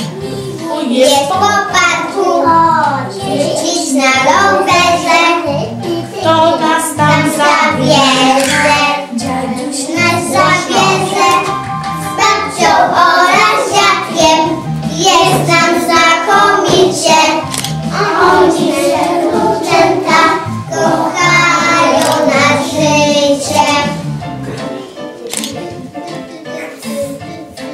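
A group of young children singing a song together over musical accompaniment, phrase after phrase without a break.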